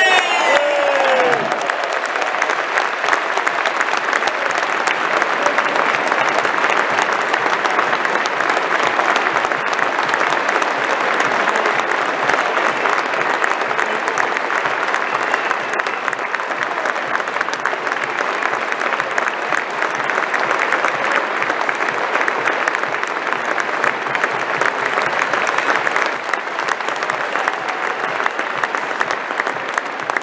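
A large football stadium crowd applauding steadily, with no break, for an award winner. A voice tails off in the first second.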